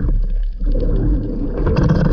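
Underwater noise of water moving past a speargun-mounted camera as a freediver swims near the surface. A steady low rumble dips briefly about half a second in, and crackling clicks come in near the end.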